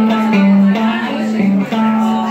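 Electric guitar played live through a small amplifier, picking a repeating riff of held low notes that alternate between two close pitches, with higher notes ringing over them.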